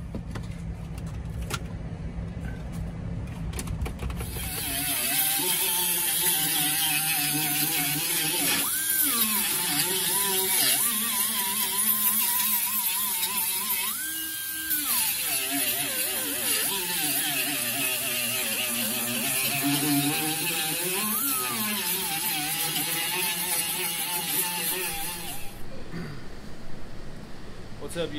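Pneumatic rotary tool working over a truck bed floor, its whine dropping in pitch as it bites under load and climbing to a steady high pitch when it spins free, with a hiss of air throughout. It starts a few seconds in and cuts off suddenly near the end.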